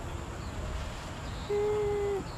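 Low, steady outdoor rumble. About one and a half seconds in, a person's voice holds a single steady hummed note for about half a second.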